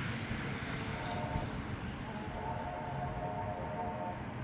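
A faint, steady engine drone over a low outdoor rumble, holding one pitch and fading in and out.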